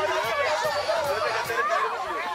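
A small crowd's overlapping voices: many people talking and calling out at once, a steady babble.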